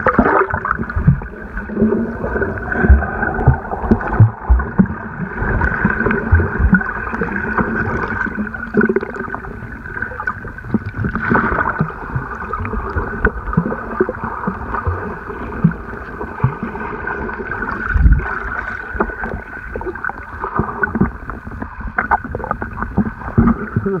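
Muffled sound of sea water moving around a camera held underwater, with frequent irregular low thumps as water and the swimmer's movements knock against it.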